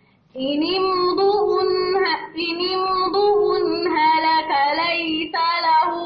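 A woman reciting the Quran in melodic tajweed style, with long held, ornamented notes. It begins about half a second in, after a short silent pause for breath.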